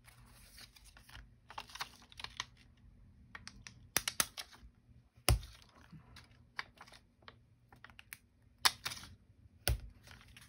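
Cardstock cards being shuffled and set down on a cutting mat: paper rustling, with a handful of sharp taps, the loudest about five seconds in and again near the end.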